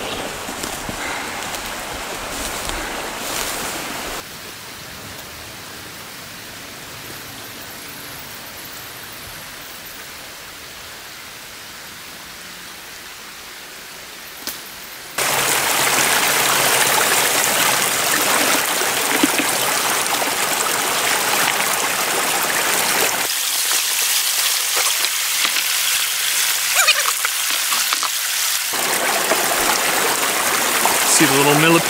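A shallow creek running over mossy rocks, a steady rush of water. It is quieter and more distant for the first half, then jumps suddenly louder about halfway through and stays loud.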